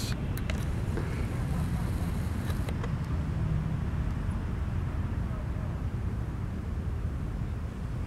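Low, steady rumble of a Coast Guard response boat's twin 225 hp outboard motors running at slow speed as it moves off.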